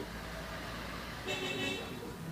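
Distant road traffic rumbling steadily, with a short vehicle horn toot about a second and a half in.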